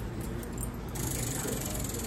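Prize wheel spinning, its ratchet clicker giving a fast, even run of ticks that starts about a second in.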